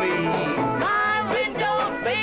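A lively country song: a young woman singing over a country band with guitar and a bass line stepping from note to note.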